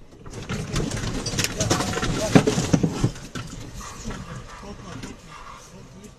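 Parked car shaken by an earthquake: a loud rattling, clattering rumble builds quickly, is loudest after about two seconds and dies down after about three, with agitated voices.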